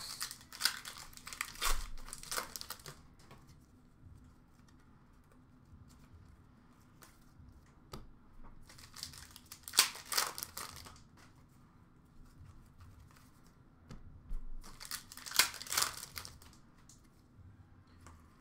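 Trading cards handled in the hands: three short spells of cards sliding and flicking against one another, in the first few seconds, about ten seconds in, and again a few seconds before the end, with near quiet between.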